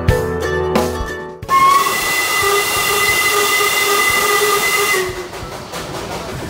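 Background music cuts off about a second and a half in, and the steam locomotive of the Darjeeling Himalayan Railway toy train sounds its whistle in one long, steady blast with a hiss of steam, stopping about a second before the end.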